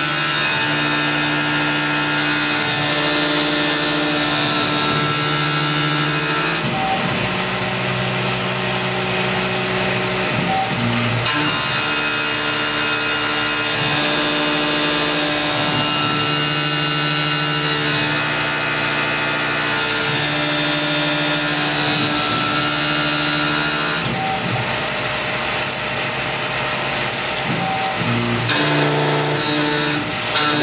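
Tormach PCNC 1100 CNC mill cutting 6061 aluminium with a 3/8-inch two-flute carbide end mill under flood coolant. The spindle and cut run steadily over a hiss, with several steady machine tones that change pitch every few seconds as the toolpath changes direction.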